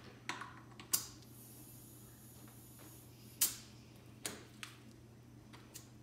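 Faint hiss of compressed air from an air chuck on a compressor hose topping up an underinflated car tyre through its valve stem, cut off by a sharp click about three and a half seconds in. Lighter clicks of the chuck and a tyre pressure gauge against the valve stem come before and after.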